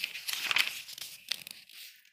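Paper page of a printed question booklet being turned, a rustling crinkle through most of the two seconds, loudest about half a second in, with a sharper crackle a little later.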